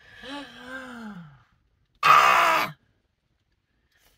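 A woman's wordless vocal sounds: a soft hummed moan that rises then falls over the first second and a half, then a loud, breathy sigh about two seconds in, lasting under a second.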